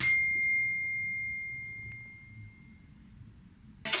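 A single high bell-like ding, one clear tone that rings on and fades away over about three seconds.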